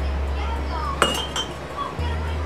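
Stainless steel canning funnel set onto a glass mason jar: a sharp metal-on-glass clink with a short ring about a second in, then a lighter second clink.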